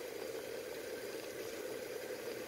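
Small lidded Magic Cooker pot simmering on a stovetop burner, a little water steaming artichokes inside: a steady, faint hiss with no breaks.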